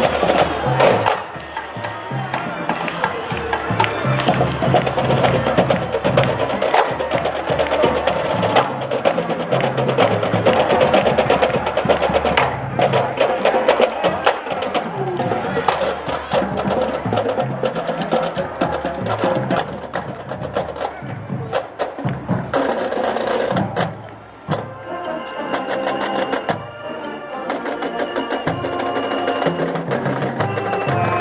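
Marching band playing live as it passes: brass (sousaphones, mellophones, baritones) over a drumline keeping up a dense rhythm of snare and drum strokes. A little before the 24-second mark the music briefly drops in level, then returns with held notes.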